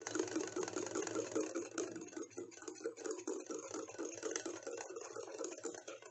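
A fork beaten rapidly by hand in a glass bowl, whipping instant coffee, sugar and warm water into a thickening foam. It makes fast, continuous wet scraping and clinking strokes against the glass, a little louder in the first couple of seconds.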